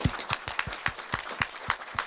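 Audience clapping: many separate, sharp claps in quick, irregular succession, greeting the launch at the press of a button.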